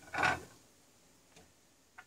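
A ceramic plate set down on a table with one short knock, followed by a faint click a little over a second later.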